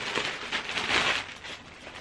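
Packaging rustling and crinkling as a new garment is pulled out of it by hand, loudest around the middle.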